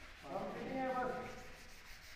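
A person's voice: one short utterance lasting about a second, beginning a quarter second in.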